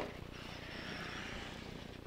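Traxxas E-Maxx electric RC monster truck: a sharp thump right at the start, then the whine of its electric motors for about a second as it drives off across the dirt, fading away.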